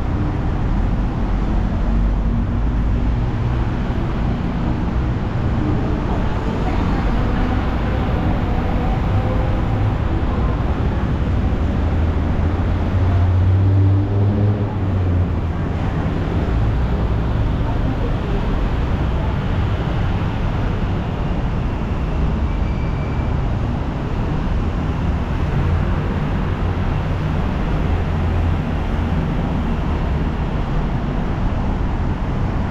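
Steady low rumble of city road traffic, with a louder low swell about halfway through.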